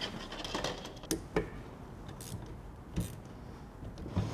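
Handling noise from an electromechanical totalisator display digit, with a few light clicks of metal parts as its small drive motor is fitted back onto the gear.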